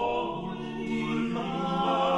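A small mixed vocal ensemble singing a five-voice Renaissance madrigal unaccompanied, several sustained vocal lines overlapping and moving to new pitches together.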